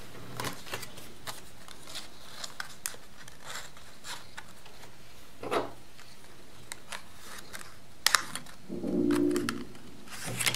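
Small clicks, scrapes and rustles of thin card being handled as metal hair clips are slid onto a die-cut cardboard display card, with two sharper clicks about eight seconds in. A brief low pitched sound comes about nine seconds in.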